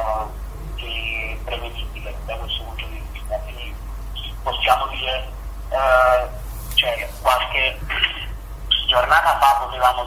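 Speech only: a person talking over a telephone line, the voice thin and cut off above the midrange.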